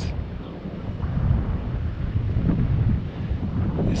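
Wind buffeting the microphone: an irregular low rumble.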